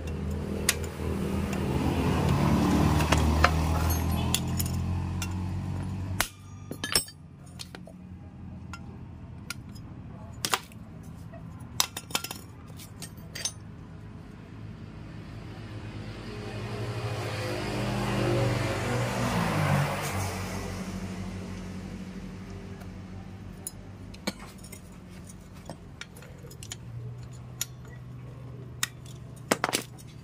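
Sharp metallic clicks and clinks of pliers pressing small steel retaining clips onto the pins of a scooter's CVT clutch-shoe assembly, scattered irregularly. Under them a vehicle engine runs in the background, growing louder and fading twice, near the start and again around eighteen seconds in.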